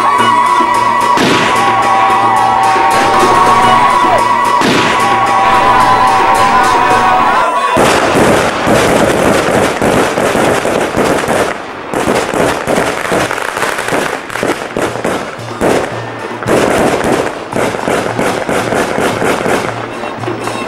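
A Yemeni mizmar (double-reed pipe) plays steady held notes over tabl and tasa drums. About eight seconds in the pipe stops, and a dense run of sharp cracks and drum beats continues to the end.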